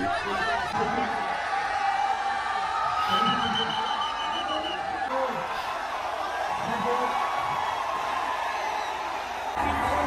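Large crowd of people shouting and cheering, many voices overlapping at a steady level, with a few held high calls near the middle.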